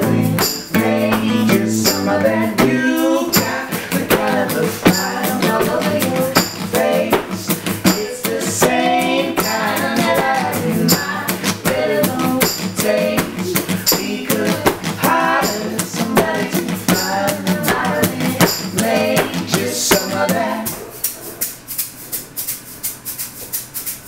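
Live acoustic band music: acoustic guitar with a shaker keeping a steady rhythm, and voices singing in harmony. Near the end the voices and guitar drop out, leaving the shaker playing more quietly.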